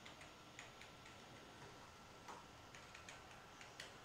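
Near silence with faint, irregular clicks of a computer mouse and keyboard.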